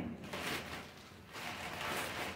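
Rustling and handling noise from handbags being moved as one bag is set down and the next is picked up, in two short scratchy spells, the second near the end.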